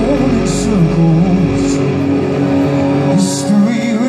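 Hard rock band playing live in a concert hall: electric guitars, bass guitar and drums, heard from among the audience. The deepest low end drops away a little before the middle.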